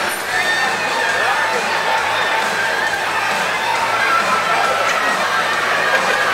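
Crowd chatter in a busy restaurant: many voices talking at once at a steady level, with music playing underneath.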